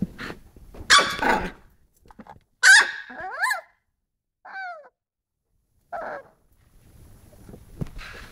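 Toy poodle puppy barking: about five short, high yaps spread across the few seconds, the loudest about a second in and just before three seconds in, with fainter, shorter ones after.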